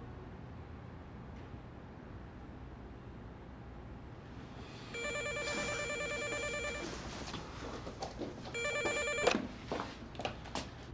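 Telephone ringing with an electronic ring tone: a ring of about two seconds, then a second, shorter ring near the end, after a few seconds of quiet room tone.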